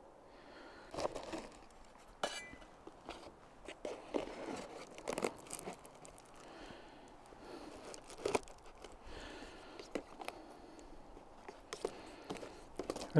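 A foil bubble-wrap (Reflectix) pot cozy crinkling and rustling as it is handled and fitted around a steel canteen cup, with scattered light clicks and knocks.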